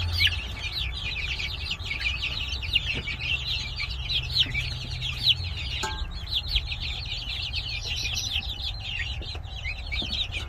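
A large brood of young chicks peeping nonstop: many short, high, falling notes overlapping, with a low steady hum beneath.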